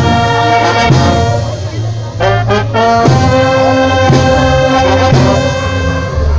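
A Mexican-style brass band plays live: trombones, trumpets and clarinets on long held chords over a tuba bass line, punctuated by sharp hits.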